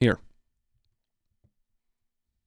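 A brief, quickly falling vocal sound at the very start, then near silence.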